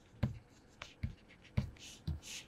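Pen writing on a tablet surface: quiet scratchy strokes with three sharper pen-tip knocks, about a quarter-second, one second and one and a half seconds in.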